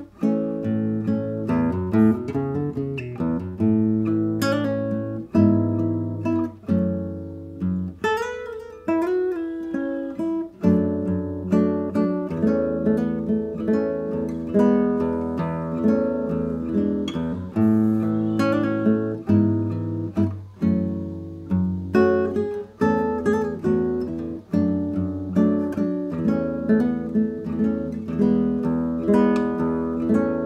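Nylon-string classical guitar played solo and fingerpicked: a melody of plucked notes over ringing bass notes, without a break.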